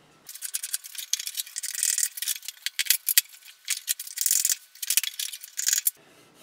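Steel card scraper shaving the cheeks of a wooden guitar neck tenon to fit it into the neck pocket: a rapid run of thin, hissing scraping strokes.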